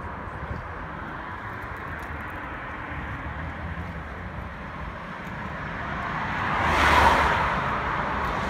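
A car passing on the nearby road, its tyre and engine noise swelling to a peak about seven seconds in and then fading, over a steady outdoor background.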